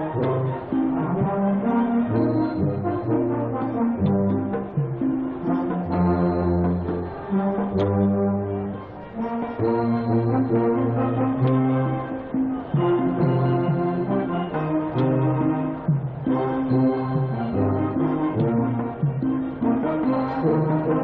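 School concert band playing: brass and woodwinds holding sustained chords over strong low brass notes, the chords changing every second or two.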